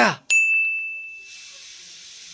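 A single bright ding, a bell-like tone that rings and fades out over about a second, followed by a steady high hiss.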